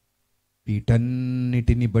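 A man preaching into a handheld microphone in a long, drawn-out phrase held on a nearly steady pitch, after about half a second of silence.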